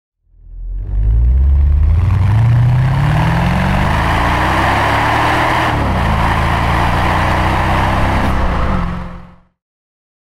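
A 2002 Mercedes-Benz SL55 AMG's supercharged V8 accelerating hard, rising in pitch for several seconds, then dropping sharply at a gear change and pulling on at a steadier pitch, with road and wind noise under it. The sound fades in at the start and fades out near the end.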